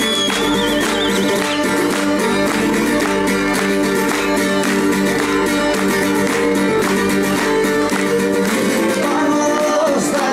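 Live band playing a Greek folk song, led by a laouto's quick plucked rhythm over other instruments, with a wavering high melody line in the first second or so. A man's singing voice comes in near the end.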